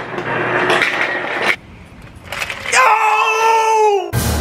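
A rushing, clattering noise for about a second and a half, then a young man's long, high-pitched yell held for over a second, his reaction to ice poured down his sweatpants.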